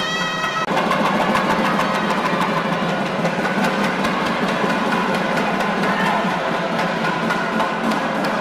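A held nadaswaram note breaks off within the first second. Fast, dense temple drumming then carries on without a break.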